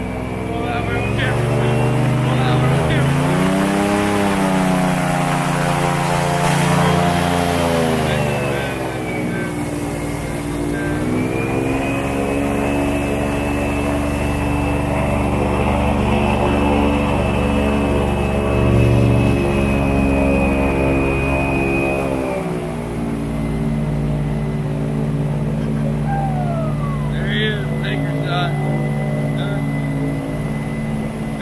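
Boat motor running and being throttled: its pitch swells up and back down over the first several seconds, rises again and holds for about ten seconds, then eases off about two-thirds of the way through.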